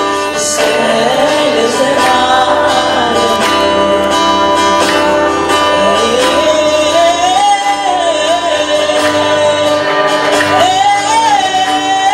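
A woman sings a slow worship song with long, wavering held notes, accompanied by her acoustic guitar.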